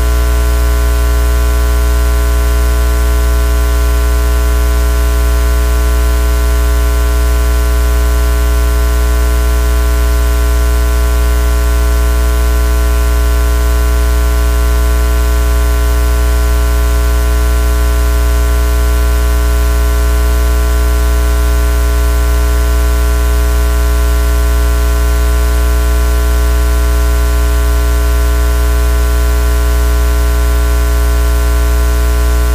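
Loud, unchanging electrical hum and hiss in the stream's audio feed: a strong low mains hum with a set of steady higher tones over even static, with no pause or change.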